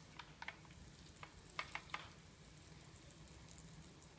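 Handheld pump pressure sprayer misting water onto compost in small seed pots: a faint hiss of fine spray, with a few soft clicks in the first two seconds.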